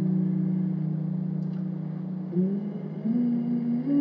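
Slow ambient music: a low sustained synth drone holds one chord, then glides to new notes a little past halfway through.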